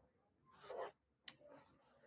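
Near silence: room tone, with one faint brief rustle a little under a second in and a small click just after.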